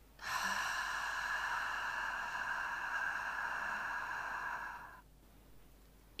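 A woman's long, steady breath out through the lips on an "f" sound, a hiss lasting nearly five seconds, emptying the lungs in a diaphragm-breathing exercise.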